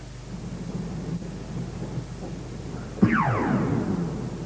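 Low steady hum and tape hiss. About three seconds in, a synthesized sound effect whose pitch sweeps steeply down over about a second.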